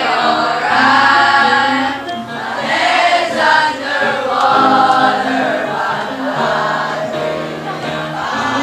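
A choir of schoolchildren singing together in phrases of held notes, with a short break between phrases about two seconds in.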